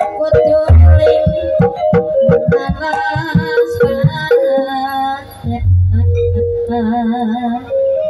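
Javanese gamelan music accompanying an ebeg trance dance: quick drum strokes and struck metal notes, with a wavering melody line coming in about three seconds in and deep low strokes around the middle.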